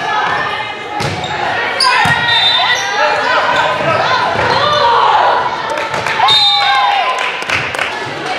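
Indoor volleyball rally: sharp thuds of the ball being played, with players and spectators calling and shouting, echoing in a large gym.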